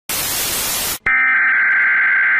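Television static hiss for about a second, cutting off sharply. Then a steady, high-pitched broadcast test tone starts and holds level.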